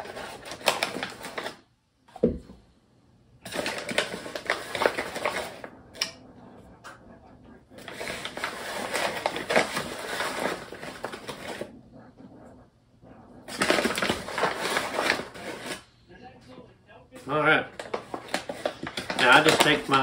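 Paper flour sack rustling and crinkling as a cup scoops flour out of it and tips it into a ceramic mixing bowl. The sound comes in several spells of a few seconds each, with short quiet gaps between them.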